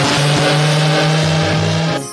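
A loud rushing noise with a steady low drone under it, which cuts off abruptly at the end.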